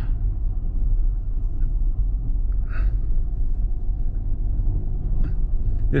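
Van driving slowly on a gravel lane, heard from inside the cab: a steady low rumble of engine and road noise.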